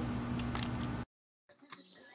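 Steady low electrical hum of the workshop's room tone, which cuts off abruptly about a second in and leaves near silence.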